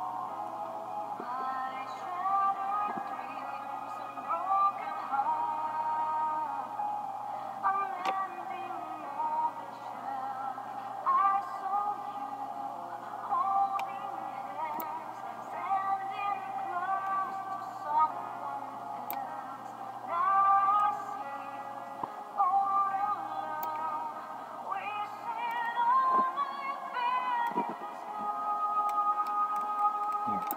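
A recorded song with a sung melody, played back through a small computer speaker and picked up across the room, so it sounds thin with no deep bass.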